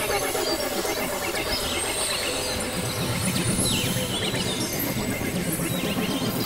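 A dense experimental noise collage of several overlapping recordings: a steady wash of hiss, a tone sliding slowly downward, and short chirping glides up high. A low rumbling layer thickens from about halfway through.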